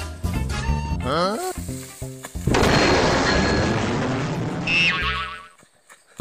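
Background music fades out into added comic sound effects: a rising, warbling glide, then about two and a half seconds of hissing noise ending in a short falling tone, followed by a brief silence.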